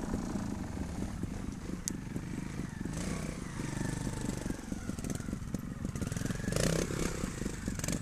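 Trials motorcycle engine running at low revs as the bike climbs a slippery slope, with a somewhat louder stretch near the end.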